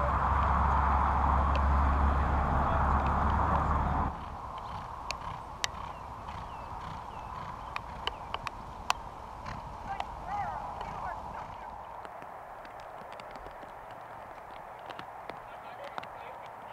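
Wind rumbling on the microphone for the first four seconds, cutting off abruptly. Then quieter open-field ambience with scattered sharp clicks and a few short honking calls.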